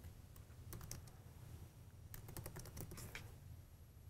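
Faint typing on a computer keyboard, key clicks in short bursts with the quickest run a little after two seconds in.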